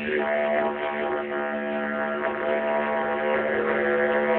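Didgeridoo played as one continuous low drone, its upper tones shifting slowly as the player's mouth shape changes. Recorded on a mobile phone, so it sounds thin and lacks any high end.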